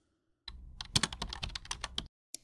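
Computer keyboard typing: a quick run of key clicks that starts about half a second in.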